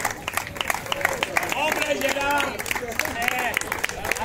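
Small audience clapping in scattered, uneven claps, with several people talking and calling out over it.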